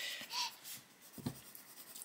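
Castle Arts coloured pencil scratching faintly on paper in a few short shading strokes.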